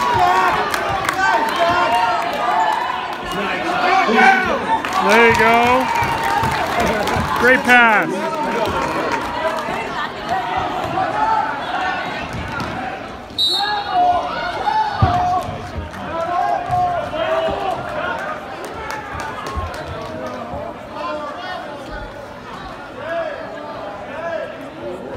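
Basketball game sounds in a school gym: the ball bouncing on the hardwood court in short sharp thuds, mixed with spectators' voices and shouts echoing around the hall.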